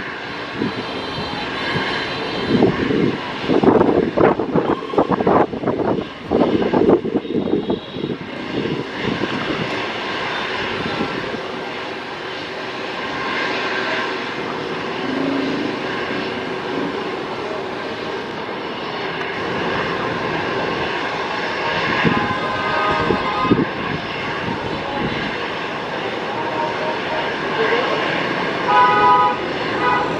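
Airbus A320's IAE V2500 jet engines at taxi thrust: a steady rushing hum, with irregular low rumbling bumps in the first several seconds. A brief horn-like toot sounds near the end.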